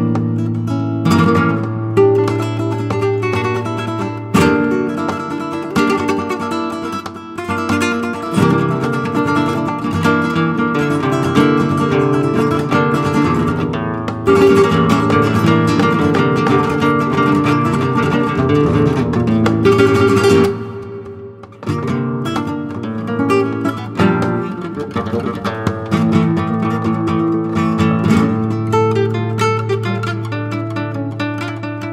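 Flamenco guitar playing a bulerías: fast plucked phrases over a held low note, with a short break in the playing about two-thirds of the way through.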